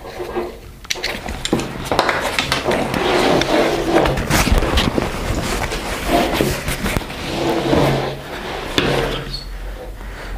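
A heavy nylon tactical backpack being handled on a table: fabric rustling and scraping, with irregular knocks and clicks from straps and buckles as the pack is lifted and turned over.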